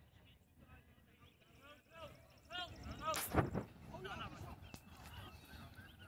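Distant voices of players talking and calling out across the field, with one loud, brief burst of noise about three seconds in.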